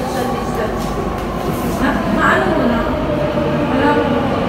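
Doha Metro train running behind the platform screen doors: a steady rumble with hiss, as heard in the underground station.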